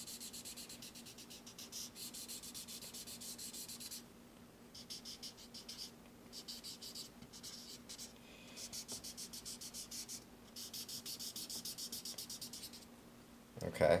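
Felt-tip marker scribbling back and forth on sketchbook paper while shading, a fast scratchy rhythm of many short strokes a second, coming in several runs with brief pauses between them.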